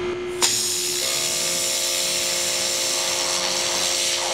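Ryobi pressure washer spraying through a rotating turbo nozzle into a block of ballistics gel. The spray comes on suddenly about half a second in as a loud, steady hiss, over a steady whine.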